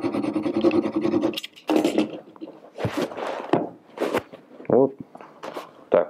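Upholstery fabric being rubbed and scratched by hand and knife tip as it is pressed down over a bolt end. A steady scratching runs for the first second and a half, then short irregular rubs follow.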